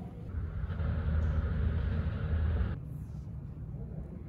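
Low, steady rumble of airport terminal background noise with a hiss on top that cuts off abruptly a little before three seconds in.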